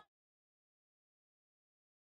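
Silence: the preceding sound cuts off abruptly right at the start and nothing follows.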